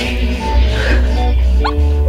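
Music with a heavy, steady bass, and one short, sharply rising cry a little past the middle.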